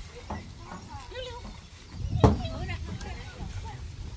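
Indistinct voices of people talking, with a low rumble underneath and one loud, sharp thump a little past halfway through.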